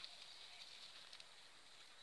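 Near silence: faint outdoor background with a couple of faint ticks.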